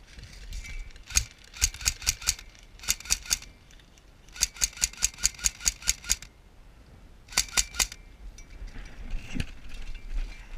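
Airsoft gun firing several quick strings of sharp shots, the longest about ten shots in under two seconds. Softer rustling of movement comes near the end.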